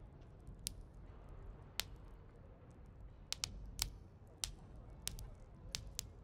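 Eating-and-drinking ambience: scattered sharp clicks and clinks of cutlery and tableware, about eight in six seconds at uneven intervals, over a low steady rumble.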